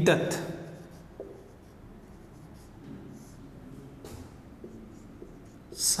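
Marker pen writing on a whiteboard: faint, short scratching strokes as words are written.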